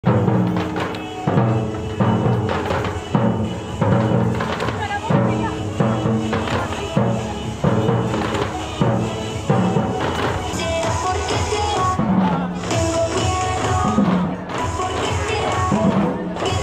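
Batucada street percussion: surdo drums beating a steady, loud pulse with tambourines jingling over it. A pitched melody joins in over the drumming in the second half.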